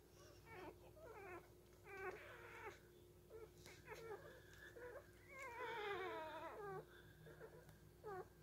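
One-week-old Shetland sheepdog puppies whining: a faint string of short, high cries, with one longer wavering cry that falls in pitch about five and a half seconds in.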